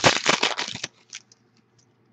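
Foil trading-card pack being torn open and crinkled by hand, a dense crackling burst for about the first second, then a few faint rustles.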